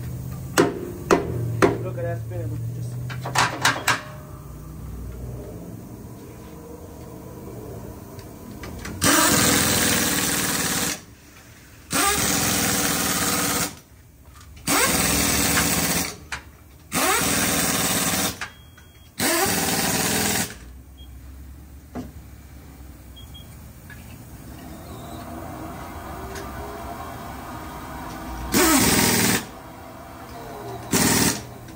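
Work at a tire shop wheel balancer. A few sharp taps come in the first few seconds, then five loud bursts of rushing noise, each one to two seconds long. Near the end the balancer spins the wheel up with a rising whir.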